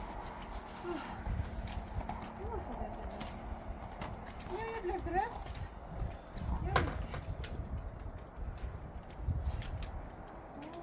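A horse's hoofsteps on packed snow as it is led up to a horsebox ramp, with a soft human voice coaxing it now and then. A single sharp knock comes about two-thirds of the way through.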